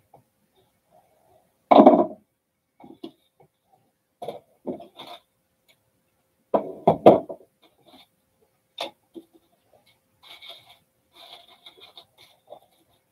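A person coughing: one loud cough about two seconds in and a quick run of three about halfway through, with a few light clicks and knocks between.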